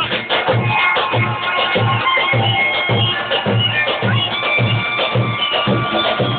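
A zurna (Albanian curle), a double-reed shawm, plays a high held melody over a davul (lodra) bass drum beating a steady pulse, just under two beats a second.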